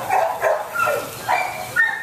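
Young dog making several short, high-pitched vocal sounds, whines and yips.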